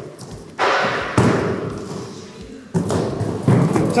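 A few heavy thuds with scraping and rustling, as cardboard boxes and boards are shifted about. Each knock fades away over about a second.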